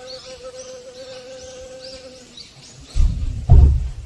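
Honeybee buzzing in flight, a steady hum that stops a little past two seconds in. Near the end come two loud low thumps.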